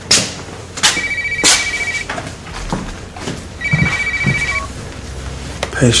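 Mobile phone ringing with a trilling ringtone, two rings of about a second each, the first about a second in and the second a little past the middle.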